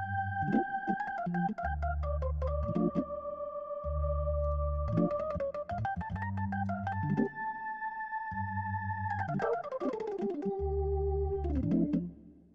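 Sampled Hammond organ (a B2–B3 hybrid recorded through a Leslie speaker) playing a warm, funky, old-school phrase on drawbars 3 and 4. Sustained high notes glide down in pitch and back up over short, repeated low bass notes, with crisp clicks at the note attacks.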